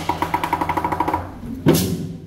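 Lion dance percussion band of lion drum, cymbals and gong accompanying a pole-jumping lion: a rapid run of light taps, about ten a second, that fades out, then one loud crash near the end.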